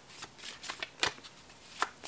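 Tarot deck shuffled by hand: a run of soft card flicks and taps, with a sharper snap about a second in and another near the end.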